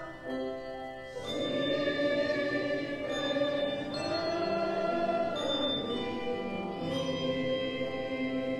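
A group of voices singing a hymn together in long, held notes, swelling to fuller singing just over a second in.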